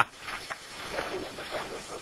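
Faint, distant voices of people talking over a steady low hiss.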